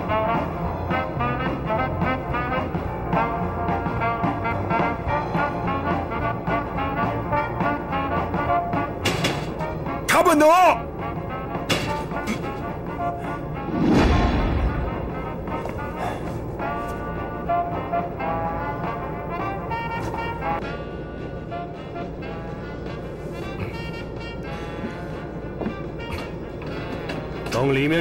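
Dramatic orchestral film score with brass, running throughout. About ten seconds in there is a brief, loud, wavering sound, and about fourteen seconds in a heavy, deep thump.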